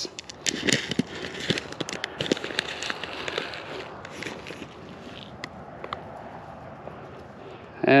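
A paper seed packet rustling and crinkling as it is pulled open and a hand rummages through the barley seed inside, with dense small crackles over the first few seconds, then fainter rustling.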